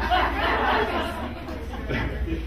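Audience laughing and chattering among themselves in reaction to a joke. The sound is loudest in the first second and dies down after about a second and a half.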